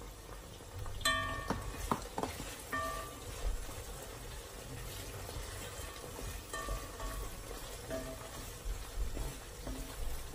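Meat frying in a metal cooking pot while a wooden spoon stirs it, with a few short ringing knocks of the spoon against the pot, about four in all.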